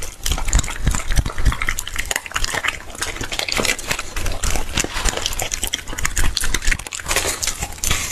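A dog chewing and crunching food taken from the hand, in a dense, rapid run of crunches and clicks. The food is duck tongue.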